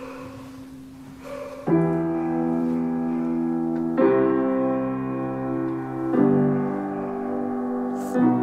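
Solo piano playing slow sustained chords, a new chord struck about every two seconds from a little way in, each left to ring.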